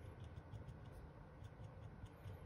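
Faint, irregular light ticks of a paint-pen tip dabbing against a steel pistol slide, a few a second, over a low room hum.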